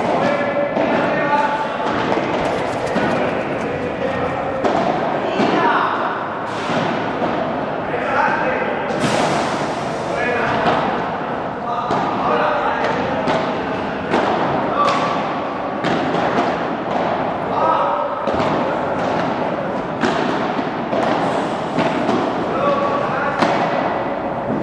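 Padel ball being struck with paddles and bouncing off the court and glass walls: a string of sharp knocks at irregular spacing in a large indoor hall, with voices in the background.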